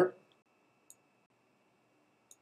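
Near silence with a single faint computer mouse click about a second in.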